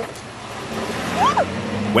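SUV engine running at low revs as the vehicle creeps down a steep dirt hill, under a steady rushing noise. A short rising-and-falling vocal cry comes a little after a second in.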